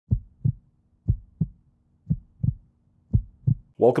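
Heartbeat sound effect: four low double thumps, about one pair a second. A man's voice starts right at the end.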